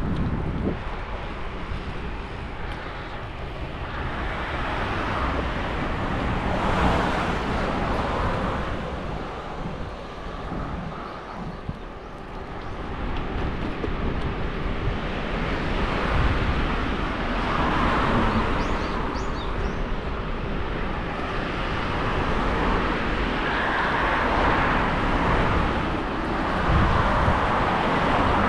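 Road traffic passing a moving bicycle, heard as a rushing noise that swells and fades several times as cars go by, with wind on the action camera's microphone.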